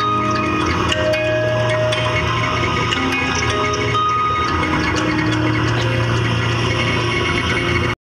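Live electronic band music, dense and layered, with many held tones and small clicks over it. It cuts off abruptly just before the end.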